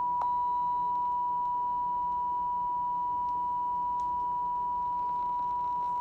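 Broadcast test tone played with colour bars: one steady, unbroken beep at a single pitch, the off-air signal after a broadcast ends. A faint click is heard about a quarter of a second in.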